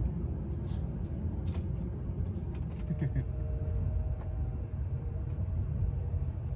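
Steady low rumble of a moving train heard inside the carriage, with a few faint knocks.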